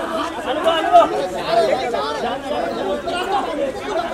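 Several voices talking and calling out over one another: chatter with no other sound standing out.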